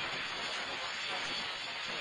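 A steady hiss that starts and stops abruptly.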